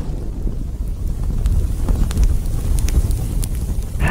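Fire sound effect: a steady low rumbling roar with a few faint crackles, the burning tail of an explosion.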